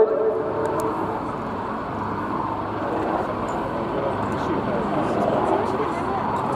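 Westland Wildcat helicopter flying past, its rotors and twin T800 turboshaft engines making a steady noise.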